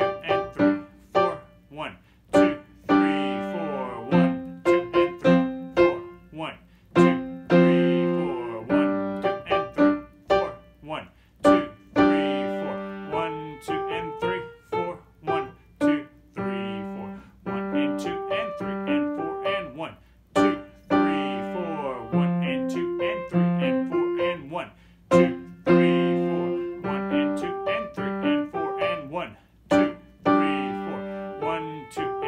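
Kawai KG-2D grand piano played with both hands at a slow practice tempo: a simple melody over a steady left-hand accompaniment, one struck note after another throughout.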